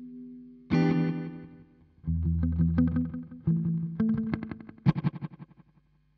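Electric guitar (Fender Mexican-made Telecaster, stock pickups) played through a Source Audio Collider pedal in tape delay mode. Chords are struck about a second in, around two seconds, three and a half seconds and just before five seconds, each followed by fading echo repeats. The sound dies out near the end.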